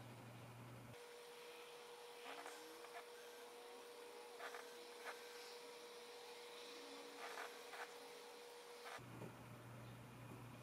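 Near silence: room tone with a faint steady hum and a few faint soft ticks.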